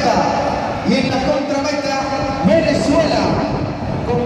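Indistinct speech in a large echoing hall, most likely the arena announcer's voice over the public-address system.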